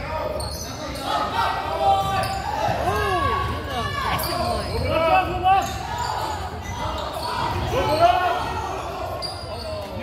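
Indoor basketball play on a hardwood gym floor: sneakers squeak in short rising-and-falling chirps, and the ball bounces in sharp thuds, all echoing in the hall.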